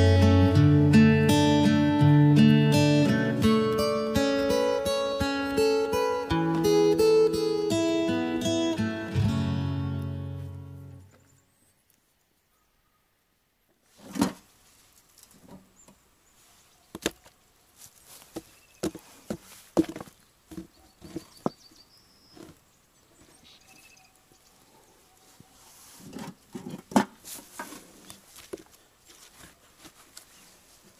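Background acoustic guitar music that fades out about eleven seconds in. After a short gap, scattered sharp knocks and clatters of broken brick pieces being handled and dropped into a post hole to pack an oak fence post.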